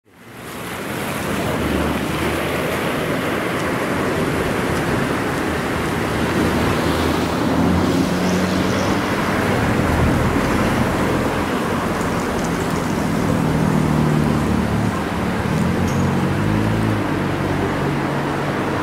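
Steady outdoor road traffic noise, fading in over the first second or two, with a low engine hum that shifts in pitch several times.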